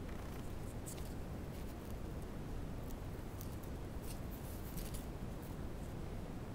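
Crinkled metallic ribbon rustling and scratching softly in a few brief, crisp bursts as fingers pleat and press it down, over a steady low hum.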